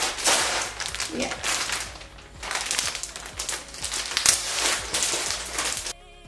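Plastic packet of braiding hair crinkling and crackling as it is handled, in irregular rustles with a short lull about two seconds in.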